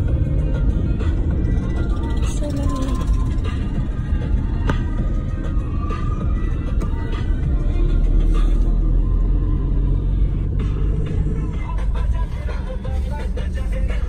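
Steady low road rumble of a moving car heard from inside the cabin, with music playing over it.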